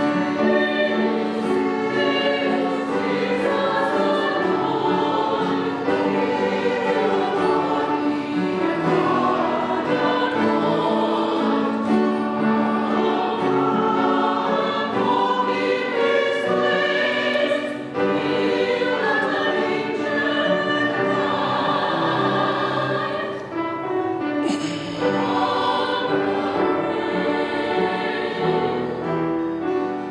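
Mixed church choir singing a hymn in harmony, accompanied by guitars and piano.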